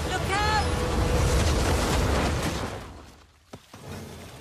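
Animated-show sound effect of a rockslide: a heavy, continuous rumble of earth and rocks falling, with a short startled cry about a third of a second in. The rumble fades away about three seconds in.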